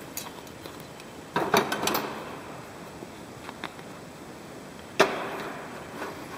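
Handling clicks and knocks of a grease gun barrel and a plastic jug over a metal tool cart: a short cluster of clicks about a second and a half in, a faint tick later, and one sharper knock near five seconds.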